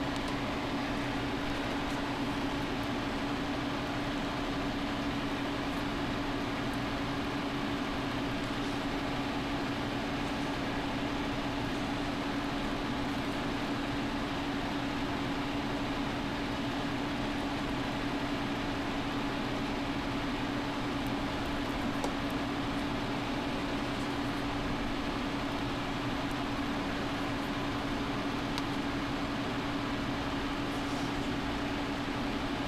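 A steady mechanical hum with one constant low tone over an even hiss, unchanging throughout.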